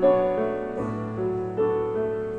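Grand piano played slowly and softly, a new note or chord struck about every 0.8 seconds over held lower notes, each one fading before the next.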